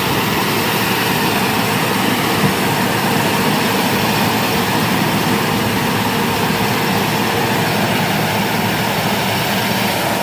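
102-horsepower FM World Star tracked corn combine harvester harvesting standing corn: a steady, loud mechanical running of its engine and threshing works under load.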